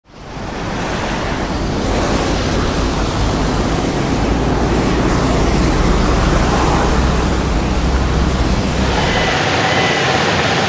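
Steady city street noise with a low traffic rumble, fading in at the start. About nine seconds in it cuts to the even rush of a waterfall.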